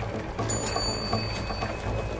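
Background music with a steady beat and a bass line. A bright, high bell-like ring comes in about half a second in and fades out within about a second.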